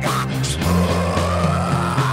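Dark metal song: distorted guitars and bass holding chords over drum hits. A long held note rises slightly over the top from about half a second in.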